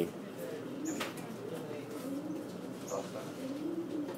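A handled ruddy duck giving a series of low, soft, cooing calls, agitated at being held. One or two handling clicks come through as well.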